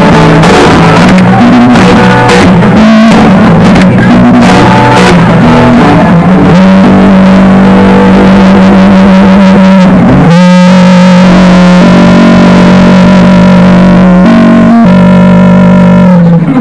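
Live acoustic guitar music, very loud, moving from shorter notes into long held notes in the second half, with a brief break about ten seconds in.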